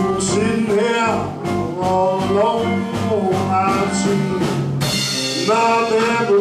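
Live blues band playing: an amplified harmonica plays bent, sliding notes over electric guitar, upright bass and drums.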